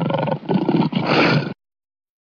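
Lion roar of the kind used in the MGM film-studio logo: two growling roars run together, with a short dip about half a second in, cutting off about a second and a half in.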